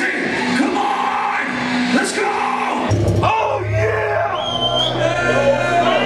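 Live metal band in a small club with the crowd shouting over amplified instruments. About three seconds in the sound changes suddenly to a held low bass note under sustained, wavering guitar tones.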